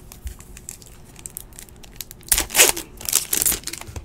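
Trading-card pack wrapper being handled and torn open: a few soft rustles, then two bursts of loud crinkling and tearing a little past halfway.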